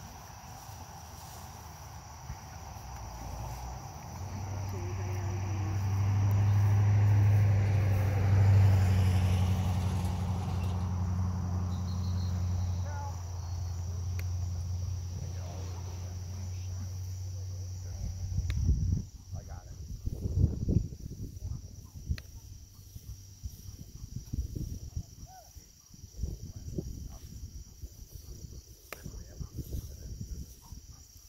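Crickets or other insects chirring steadily in a grassy field. Under them, a low motor hum swells over a few seconds, holds, and stops abruptly about 18 seconds in. Irregular low gusts of wind on the microphone follow.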